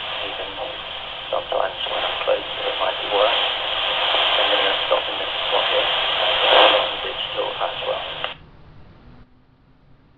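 Kenwood TK-3701D PMR446 walkie-talkie's speaker playing a received voice transmission, muffled, narrow-band and mixed with hiss so the words are unclear. The transmission cuts off about eight seconds in.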